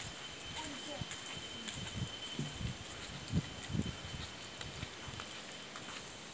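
Quiet open-air ambience: faint distant voices and scattered soft knocks, over a thin steady high-pitched whine.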